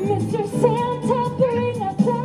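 Christmas pop song played loud through the show's sound system, voices singing a gliding, wordless line over the backing music.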